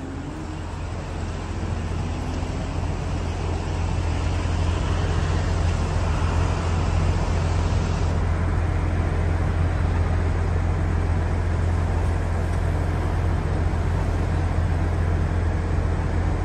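Steady outdoor background noise: a low rumble with a hiss over it, growing louder over the first few seconds and then holding level.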